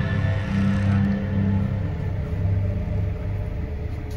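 A low, rumbling drone from a horror film score, pulsing deep tones that swell in the first two seconds and then slowly fade.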